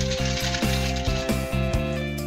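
Cooking sizzling in a wok over a gas burner as it is stirred, under background music with a steady beat.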